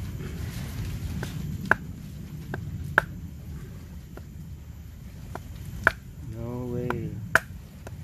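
Wooden baton striking the spine of a small fixed-blade cleaver (Gerber Tri-Tip), driving the blade down into an upright stick to split it: about seven sharp knocks at irregular intervals, the loudest about 1.7, 3, 6 and 7.3 seconds in.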